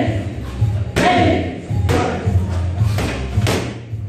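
Punches and kicks landing on handheld strike pads: about four sharp smacks spread over a few seconds, with background music under them.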